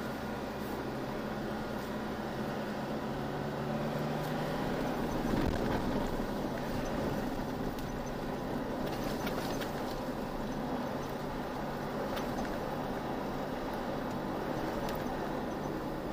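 Vehicle driving on a sandy dirt track, heard from inside the cabin: a steady engine drone with tyre and road noise, and a few light rattles.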